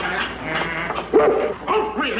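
A dog barking, two short barks about a second in and near the end.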